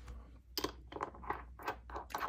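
Screw cap being twisted onto a small glass ink bottle: a quick run of short scrapes and clicks starting about half a second in.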